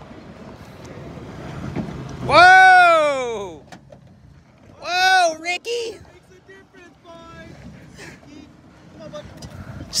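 2002 Toyota Tacoma pickup's engine revving under light throttle, the wheels spinning so the electric rear locker can engage; it builds over the first two seconds. Over it, two loud, drawn-out voice calls that rise and fall in pitch, the first about two and a half seconds in and the longest, the second about five seconds in.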